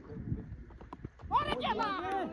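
Several voices shouting at once, starting suddenly about a second and a half in and overlapping one another, over faint low rumbling before it.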